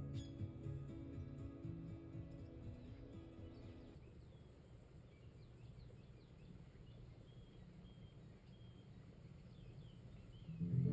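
Soft ambient new-age music fades out over the first few seconds. It leaves a near-quiet stretch with faint bird chirps.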